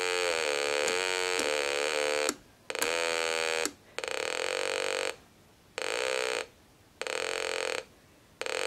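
A home-built 555-timer audio oscillator sounds through a small loudspeaker as an audible SWR indicator: a buzzy tone wavering in pitch, first for about two seconds, then in four shorter bursts with gaps as the antenna coupler is adjusted. The tone shows reflected power on the antenna bridge. Its dropping out marks the tuning nearing a low-SWR null, where the oscillator falls in pitch and cuts out.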